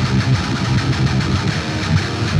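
Electric guitar played through a Monomyth-modified Marshall Silver Jubilee valve amp head and 4x12 cabinet: a continuous, heavily distorted riff with low notes.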